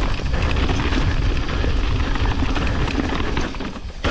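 Mountain bike rolling at speed down a dirt trail: tyre noise over dirt and leaves and the bike's rattle under a loud, steady rumble of wind on the microphone. The noise dips briefly just before the end.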